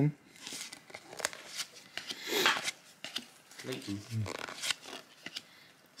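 Gloved fingers sliding and flicking 1992 Donruss baseball cards through a stack: a run of short papery clicks and rustles. A brief low murmur of voice comes a little past the middle.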